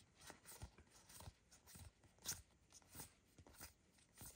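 Faint, scattered clicks and light rustles of trading cards being slid against each other and fanned in the hands, with one slightly louder click a little past halfway.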